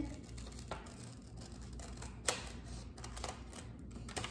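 Scissors cutting construction paper: a slow, irregular series of short snips as the blades close through the paper, the sharpest about halfway through.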